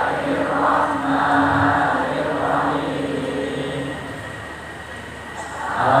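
Large massed choir of students singing together over a sound system, holding a long low note under the blended voices. The singing dies down in the second half and swells back up right at the end.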